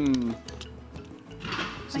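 Soft background music, with a drawn-out spoken filler word trailing off at the start and a brief exclamation at the very end.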